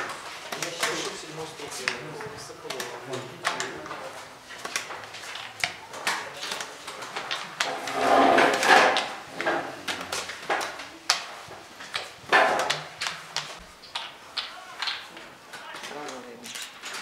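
Irregular sharp clicks of draughts pieces set down on boards and game-clock buttons pressed, over background voices in a hall.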